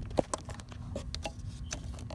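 A few light clicks and taps, the sharpest just after the start, over a faint steady low hum: handling noise from a hand and camera moving among the engine parts.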